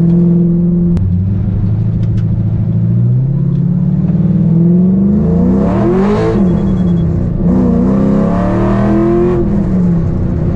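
Car engine heard from inside the cabin while driving, the engine note climbing in pitch under acceleration. The pitch falls away sharply about six seconds in, climbs again, and drops once more near the end, as the car shifts up through the gears.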